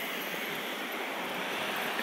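Steady background noise of city traffic, with no distinct single event.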